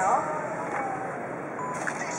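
Steady outdoor background noise of an urban street with road traffic, after a short spoken word at the start.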